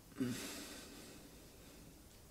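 A person's brief, faint hum with a breath out, about a quarter second in; the breathy tail fades over the next second into quiet room tone.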